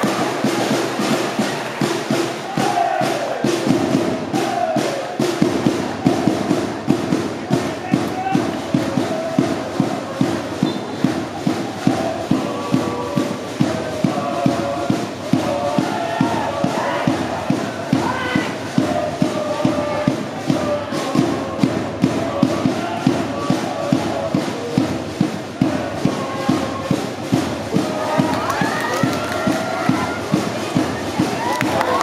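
Football supporters chanting and singing in unison over a steady bass drum beat of about two strokes a second.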